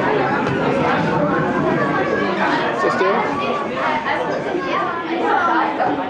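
Many voices chattering at once, overlapping, with no single voice or words standing out.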